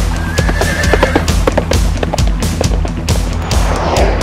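Rock soundtrack music with a horse's whinny laid over it during the first second or so.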